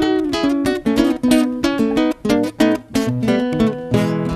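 Acoustic guitar playing an instrumental passage of a folk song, strummed in a quick, even rhythm with no singing.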